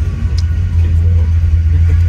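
Carburetted car engine idling with a steady low rumble, heard from inside the cabin.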